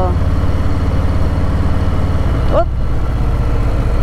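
2019 Harley-Davidson Low Rider's V-twin engine running steadily at cruising speed, a low even pulsing rumble, with wind rushing past.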